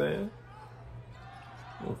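Basketball bouncing on a hardwood court amid quiet arena sound from a game broadcast, between a man's words "good pass" at the start and again at the end.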